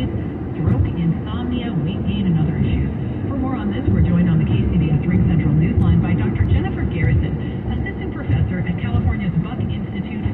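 A talk-radio voice plays inside a moving car's cabin, thin and cut off in the highs, over the steady road and engine noise of the car driving at speed.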